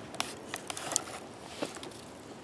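A fixed-blade knife drawn from a leather sheath: faint rubbing with a handful of small scattered ticks.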